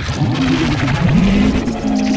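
Heavily processed, pitch-shifted cartoon voice audio, warped by effects. Its pitch sweeps upward about halfway through and then holds steady.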